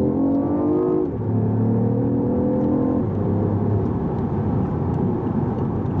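BMW i8's turbocharged three-cylinder engine under hard acceleration, heard from inside the cabin. Its note rises and drops back at upshifts about one and three seconds in, then fades under steady road noise.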